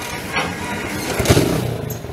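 Small Yamaha motorcycle engine running, with a brief rise to its loudest a little past the middle.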